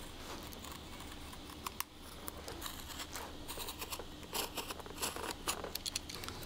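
Small craft knife blade cutting and scraping along the edge of a carbon fiber skate shell, trimming the lining flush: a run of short, dry scratching strokes and clicks, coming more often in the second half.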